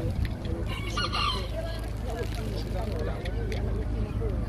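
A rooster crows once, briefly, about a second in, over faint background voices and a steady low rumble.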